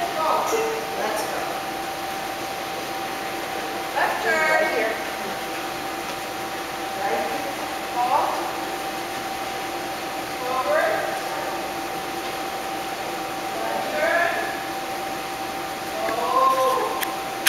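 Short pitched voice calls come every few seconds over a steady hum.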